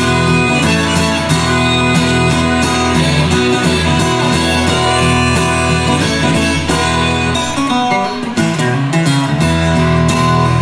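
Acoustic guitar strummed in a steady rhythm, an instrumental break in a live song, heard through the venue's PA.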